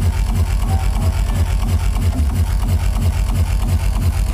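Industrial hardcore played loud over a club sound system, dominated by a fast, heavy kick-drum beat that dropped in just before.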